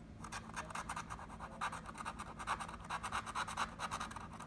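A plastic scratcher tool scraping the latex coating off a scratch-off lottery ticket, in quick, rapid back-and-forth strokes, several a second.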